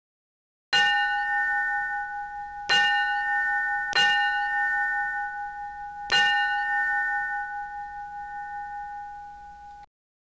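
A bell struck four times at uneven intervals. Each strike rings on with a steady clear tone that slowly fades, and the ringing cuts off abruptly just before the end.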